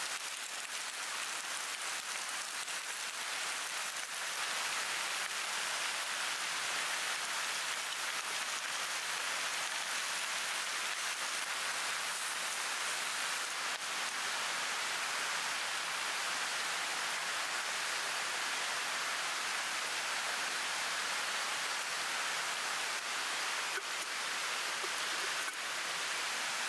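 Steady, even hiss of water with no pauses and a few faint ticks.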